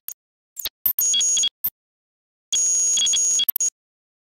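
Synthesized electronic beeping tones in separate bursts, a few short blips, one burst of about half a second and a longer one of about a second, with silent gaps between them.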